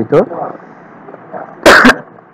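A man sneezes once, a short, sharp burst near the end of a pause in his speech.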